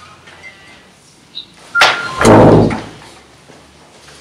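Handling noise from a handheld microphone as it is passed from one person to another. There is a sharp click a little under two seconds in, then a loud, low thump and rustle about half a second later.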